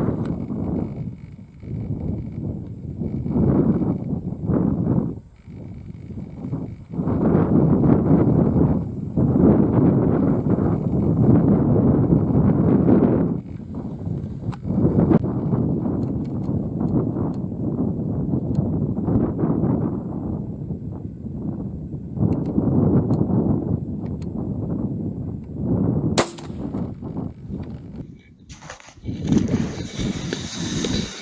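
A single sharp rifle shot near the end, fired at a fox; the bullet appears to have passed through the animal. Before it there is a long stretch of rumbling noise that swells and fades.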